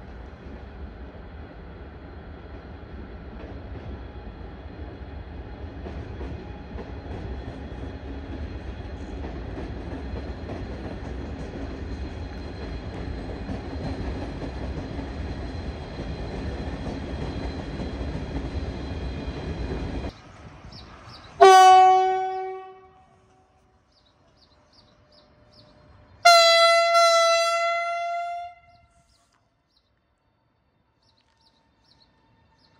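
A train's steady running rumble slowly grows louder, then cuts off about twenty seconds in. It is followed by two blasts of an Alstom ETR 610 electric train's horn as it approaches the platform: first a lower note, then about five seconds later a higher note, each fading away within a couple of seconds.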